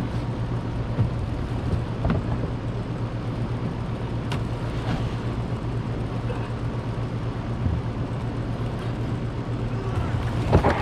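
A vehicle engine idling steadily, with a few sharp knocks as the hot tub's cabinet is shoved across the rocks.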